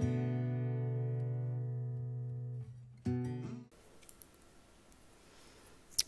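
Guitar background music: a held chord that fades out, one brief last note about three seconds in, then only faint room noise.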